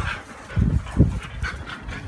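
Dogs crowding close to the microphone and sniffing, with two short low thumps about half a second and a second in.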